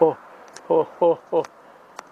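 A person's voice in short, repeated syllables that fall in pitch, about five of them in two seconds.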